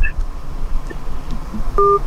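Low hum on an open telephone line, then near the end a short telephone beep of two tones sounding together: the sign that the call has dropped.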